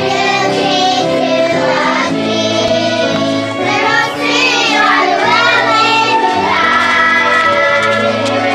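A group of young children singing a song together, with musical accompaniment.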